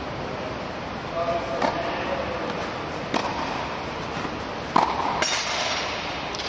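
Tennis ball being struck by racket strings and bouncing on the clay court: four sharp knocks about a second and a half apart over a steady background hiss.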